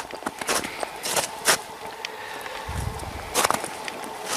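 Footsteps on thin fresh snow over a gravel road: about five separate crunching steps, irregularly spaced, with a short low rumble about three seconds in.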